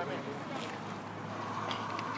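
Indistinct voices of players and onlookers on an open field, over a steady rush of wind on the microphone.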